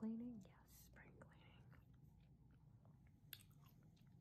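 Faint gum chewing close to the microphone, in short irregular sounds, after one softly spoken word at the start.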